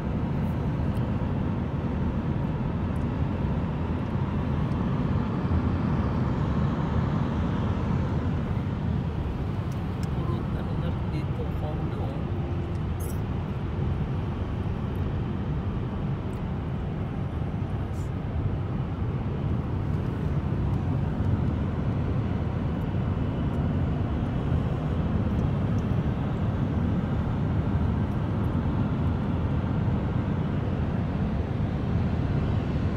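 Steady, low road and engine rumble of a moving car, heard from inside the cabin.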